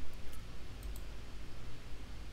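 A few faint computer mouse clicks over quiet room hum.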